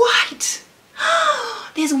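A woman's sharp gasp of surprise, then a short voiced exclamation rising and falling in pitch, with speech starting near the end.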